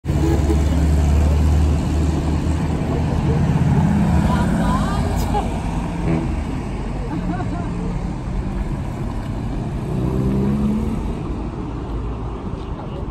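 Old cars driving past one after another over cobblestones, with low engine sound and tyre rumble on the cobbles. Loudest in the first two seconds as the first car passes close, swelling again near the end as another car goes by.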